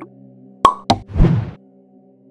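Editing sound effect for an outro transition: two quick pops about a quarter second apart, then a short whoosh, over quiet background music.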